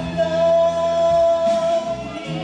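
A man singing one long held note into a microphone over a band's accompaniment; the note ends near the close.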